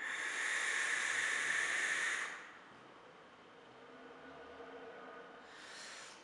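A long draw on a Vapwiz Pollux 25 pen-style vape fitted with a 0.2-ohm coil: a steady airy hiss of air pulled through the device for about two seconds, then quiet. Near the end comes a shorter, softer breathy hiss as the vapour is breathed out.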